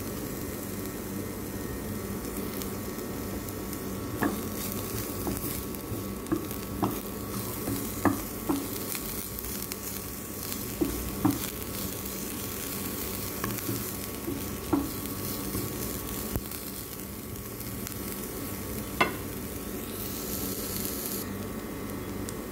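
Chopped onions and minced garlic frying in a little oil in a non-stick pan, with a steady sizzle. A wooden spatula stirs them and knocks sharply against the pan about eight times.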